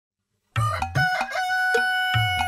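A rooster crowing cock-a-doodle-doo, in a long held call, over the start of a plucked-string music intro. Both begin about half a second in, after silence.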